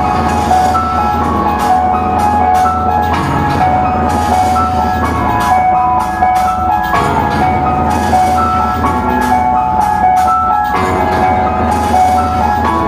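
Live rock band playing loud: electric guitars and bass over a drum kit, with a high melody line that repeats every few seconds.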